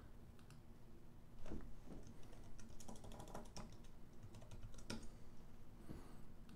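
Faint, irregular clicks of a computer keyboard and mouse, starting about a second and a half in.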